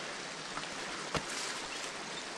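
Steady low background hiss, with one short click a little over a second in.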